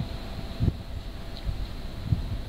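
Wind buffeting the microphone: an uneven low rumble that swells briefly about a second in, with a faint steady high whine underneath.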